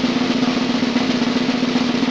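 Snare drum roll: a fast, even rattle of strokes held at a steady level, over a steady low tone.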